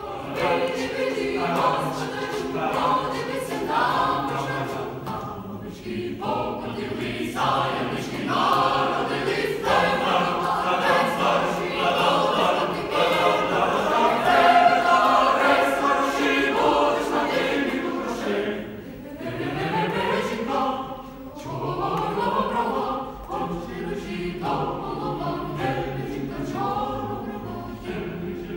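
Boys' and men's choir singing a Ukrainian Christmas carol unaccompanied, with a few rising slides in pitch about two-thirds of the way through.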